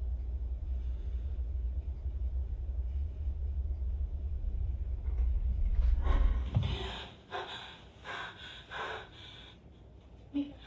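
A deep, steady low rumble from a horror-film soundtrack swells and then cuts off sharply about seven seconds in. A run of short, heavy breaths or gasps follows, about two a second.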